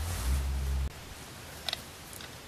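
A low steady hum that cuts off abruptly about a second in, then quiet room tone with one brief faint click near the end.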